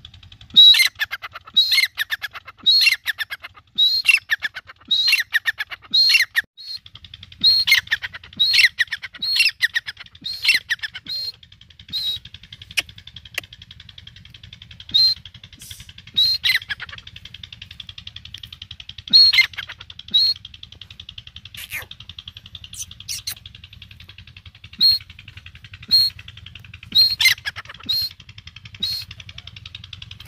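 A teetar (francolin) calling: a fast run of loud, shrill calls that each slide downward, about one a second for the first ten seconds, then single calls at scattered intervals.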